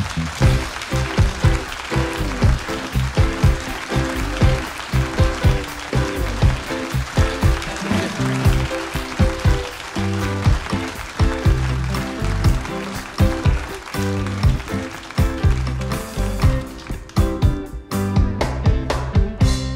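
Live house band of drum kit, bass guitar, electric guitar and keyboards playing an upbeat walk-on tune with a steady driving beat.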